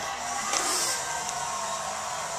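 Steady whir of an electric blower running, with a brief high hiss about two-thirds of a second in.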